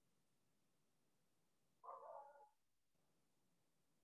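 Near silence, broken once about halfway through by a faint, brief pitched sound lasting about half a second.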